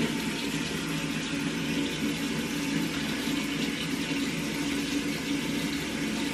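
Water running steadily.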